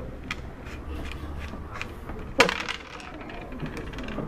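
Backgammon checkers clicking against each other and being set down on a wooden board as the pieces are set up: a scatter of short sharp clicks, the loudest about two and a half seconds in.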